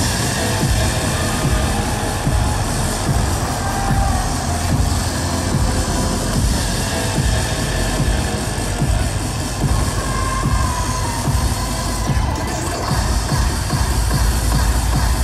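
Electronic dance music played loud over an arena sound system, with heavy bass and a fast, dense drum beat running without a break.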